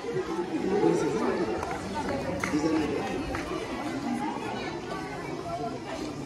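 Several voices of a group of people talking and chattering at once, with no music playing.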